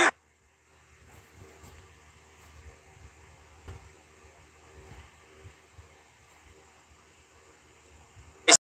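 Broadcast commentary cuts off a moment in, and the audio drops to near silence, with only a faint low hiss and a few soft low thumps, while the live stream stalls and buffers.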